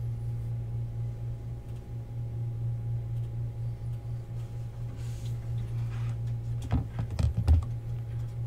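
Steady low electrical hum, with a quick run of sharp clicks and taps near the end, the loudest about half a second before the end.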